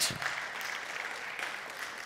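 Congregation applauding, a steady patter of clapping after the preacher's point.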